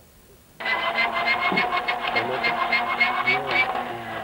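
A voice coming over a handheld two-way radio, with static and a steady whine, switching on abruptly about half a second in.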